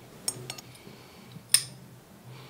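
Sharp clinks of small hard, metal-sounding objects being handled: a quick cluster of light clicks about a quarter-second in, then one louder clink with a short ringing tail about one and a half seconds in.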